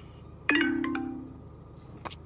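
A short electronic chime about half a second in: a few quick notes stepping down over a held lower tone, fading within about a second. It is typical of a phone's call-ended tone as the call hangs up.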